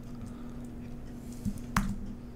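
Quiet room tone with a steady low hum, and a single sharp click near the end.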